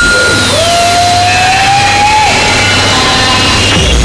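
Harsh lo-fi noise music on a four-track cassette recording: a dense wash of noise with gliding electronic tones, one arcing up and back down, another held and slowly rising. The bass drops out, then a fast, dense low pounding comes back just before the end.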